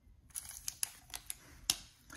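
Plastic wrapper of a trading card pack crinkling faintly as it is picked up and handled, a handful of short soft crackles and ticks.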